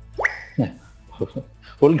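Brief voice sounds between sentences of a debate: a quick rising vocal sweep, then a few short falling syllables.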